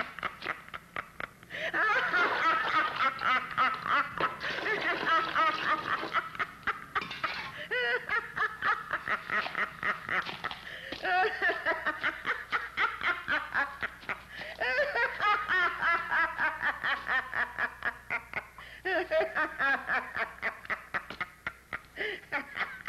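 A witch's high-pitched cackling laughter, fast and unbroken, in several long peals separated by short pauses.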